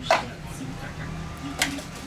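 Two sharp knocks of household objects being handled and moved, the first and louder just at the start and the second about a second and a half later, under faint low voices.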